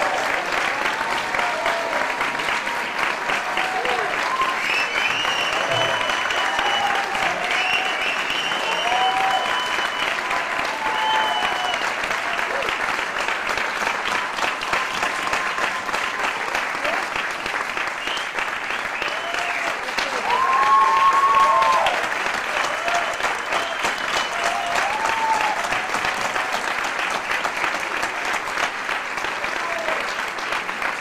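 Concert audience applauding steadily, with scattered cheering voices over the clapping and a louder cheer a little over two-thirds of the way through.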